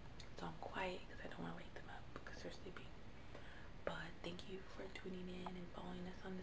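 A woman's voice speaking softly, words too quiet to make out.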